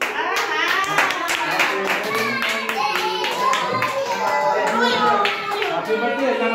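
A small group clapping in a steady, even rhythm, with voices singing along over the claps.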